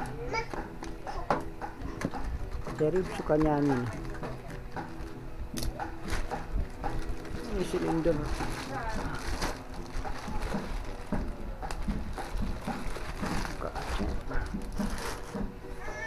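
Plastic packaging crinkling and rustling in the hands as a parts bag is cut open and a foam wrap pulled off a new cylinder block. Voices break in now and then.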